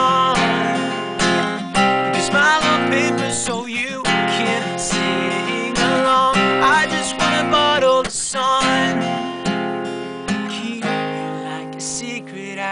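Acoustic guitar strumming chords as accompaniment to a song, in a steady rhythm.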